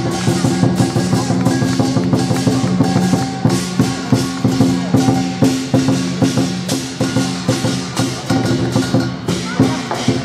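Chinese lion dance music: a steady percussion beat of about three or four strikes a second over sustained low tones, accompanying the dancing lion.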